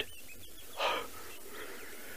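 A man's single audible breath, about a second in, over faint steady background noise.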